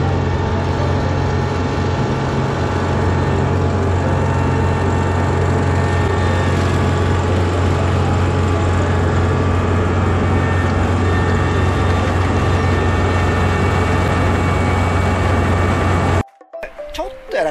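Kubota ER470 combine harvester running steadily under load while cutting rice, a loud, even diesel drone with a strong low hum and no change in speed.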